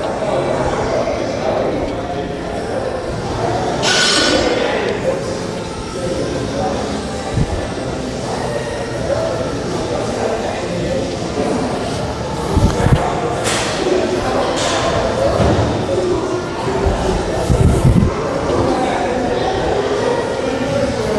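A person's voice throughout, with a few low thuds and some light clinks.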